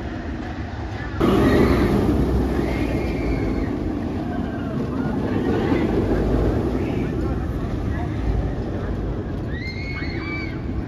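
Bolliger & Mabillard inverted roller coaster train running through its loops, a steady rumbling roar that gets suddenly louder about a second in, with riders' screams rising and falling over it.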